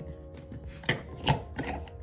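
Handling clicks and light scrapes of a thermal carafe's screw-on lid being checked and tightened, with two sharper clicks about a second in. Quiet background music plays throughout.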